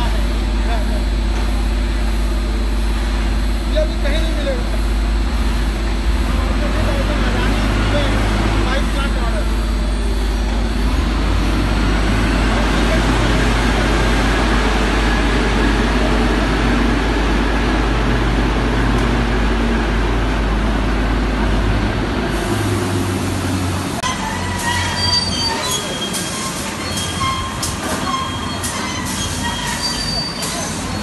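Conveyor and bagging machinery running in a bulk urea handling plant: a steady low hum under a rushing noise, the hum stopping about three-quarters of the way in, then scattered clanks and clicks from the machinery. Voices are mixed in.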